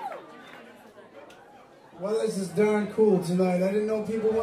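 A harmonica note bending down at the very start, then about two quieter seconds, then a man's voice through the PA from about two seconds in.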